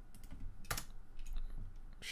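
Computer keyboard clicks: a few scattered keystrokes, one louder click about three-quarters of a second in.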